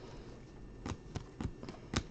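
Stiff Topps Finest baseball cards flicked and slid through the hands one after another, making soft sharp clicks about five times in the second half.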